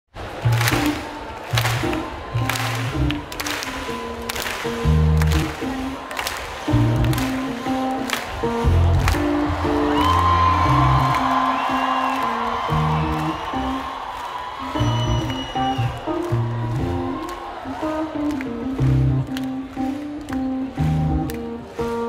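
Live electronic music through a concert PA, heard from within the crowd: deep bass notes and keyboard chords over a beat of sharp clap-like hits, with the audience cheering.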